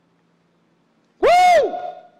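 A man's loud exclamatory whoop, "Woo!", about a second in after a silent pause, one call that rises and then falls in pitch; a steady tone at the same pitch lingers briefly after it.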